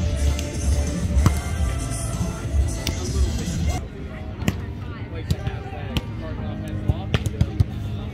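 Background music with people talking, and from about halfway through a run of sharp smacks, a volleyball being struck during a rally, the last few coming in quick succession.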